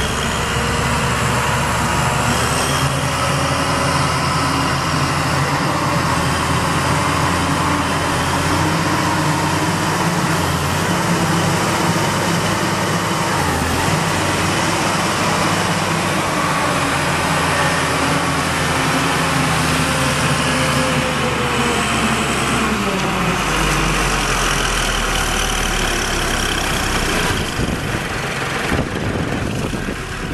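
Cummins 5.9-litre six-cylinder diesel engine of a Champion 710A motor grader running steadily, its engine speed rising and falling a few times.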